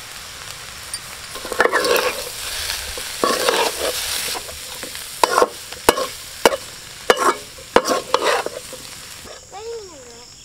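A metal spatula stirs cauliflower and scrambled egg in a sizzling metal pan, first with scraping strokes. Then, from about halfway, it scrapes and knocks sharply against the pan about every half second.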